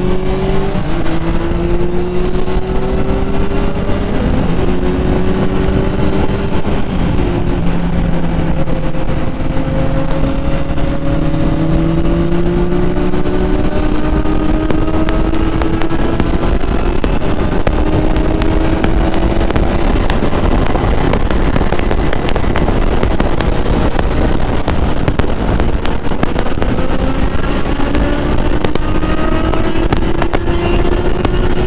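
Triumph Trident 660 three-cylinder engine cruising at speed, its note drifting slowly up and down, under heavy wind rumble on the microphone.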